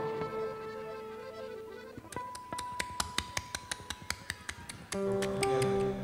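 Stage band instruments sounding between songs: a held chord for about two seconds, then a single steady note with a quick run of sharp taps, then another held chord about five seconds in.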